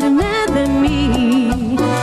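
Live band playing a romantic Latin pop song: a woman sings one long held note that wavers with vibrato and dips in pitch, over bass guitar, keyboard and hand percussion keeping a steady beat.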